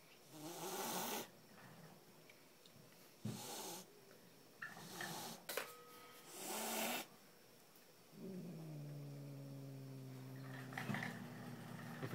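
An angry domestic cat hissing three times, short breathy hisses a few seconds apart, then a low, steady growl of about three seconds near the end: a defensive warning.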